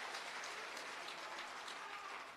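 Audience applause: dense clapping that slowly dies down.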